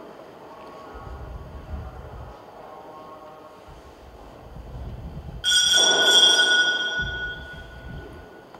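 A single struck altar bell about five seconds in, ringing with a clear high tone that fades over about two seconds. It is the bell rung at the elevation after the consecration. Before it, faint low rumbling.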